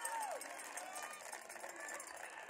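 Players and spectators shouting and cheering at a lacrosse goal. A long cheer falls away in the first half second, leaving scattered shouts and calls.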